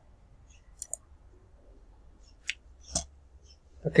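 A few sharp computer mouse clicks in a quiet room: a quick pair about a second in, then single clicks about two and a half seconds in and near the end.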